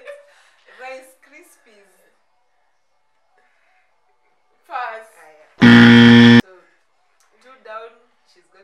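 A game-show-style buzzer sound effect: one loud, flat buzz, under a second long, that starts and stops abruptly a little past halfway through, between short bits of women's voices.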